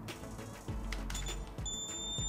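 Background music, with a few faint clicks and a thin high-pitched tone that comes in about halfway through and rises very slightly.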